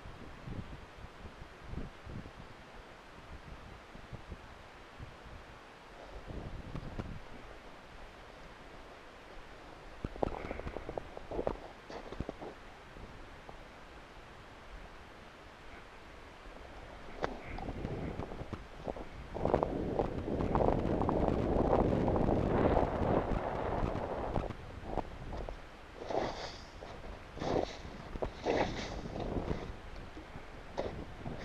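Wind buffeting the microphone, with scattered crunches and knocks of boots and gear on snow-covered ice. The crunching grows to a dense, louder stretch about two-thirds of the way in and turns to a run of crackling clicks near the end.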